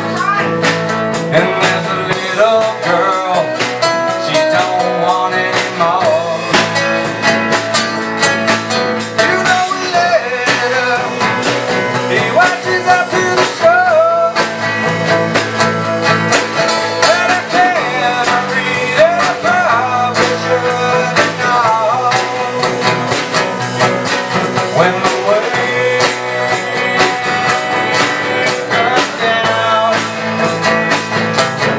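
Live band playing a song: acoustic guitar and electric guitar over a drum kit.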